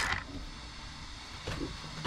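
Electric drive motor of a Losi Promoto MX RC motorcycle cutting off as the brake stops the spinning rear wheel, its sound dying away at the start. Then a faint steady hum with two light clicks, one about a second and a half in and one near the end.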